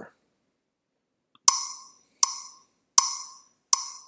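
Web rhythm-trainer click track sounding four short, evenly spaced clicks about three-quarters of a second apart: the four-beat count-in before the rhythm is tapped.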